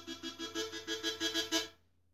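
Harmonica in A minor playing a quick run of short, pulsed notes that breaks off about one and a half seconds in.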